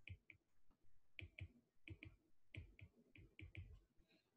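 Faint, unevenly spaced clicks, a few a second: a stylus tip tapping on a tablet's glass screen as words are handwritten.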